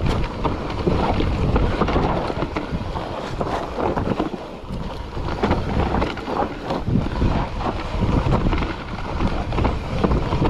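Wind buffeting the microphone over a mountain bike's tyres rolling down a dirt forest trail, with frequent short knocks and rattles from the bike over roots and bumps.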